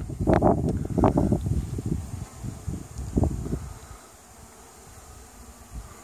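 Honeybees buzzing around the hive entrance and feeder, with rustling and a few soft knocks over the first three seconds or so, then quieter.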